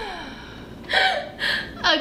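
A woman's breathy laughter and gasps: a falling exhaled laugh, then two short breathy bursts about half a second apart.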